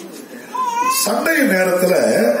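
A man preaching, with a brief pause at the start. About half a second in, a high, thin wavering cry rises and falls over it, and then his speech resumes.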